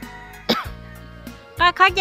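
A voice speaking over steady background music, with a short vocal burst that falls in pitch about half a second in.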